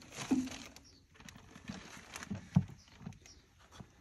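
Plastic bag rustling and a few short knocks as a used spin-on oil filter is handled inside the bag and dropped into a plastic bucket. The loudest knock comes about two and a half seconds in.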